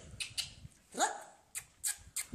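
A single short yelp, rising in pitch, about a second in, with a few sharp clicks around it.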